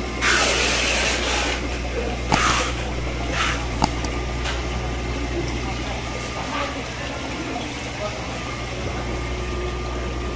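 Aquarium shop ambience: a steady hum of tank pumps and filters with water running and splashing, plus a few louder rushes of noise and sharp clicks in the first few seconds.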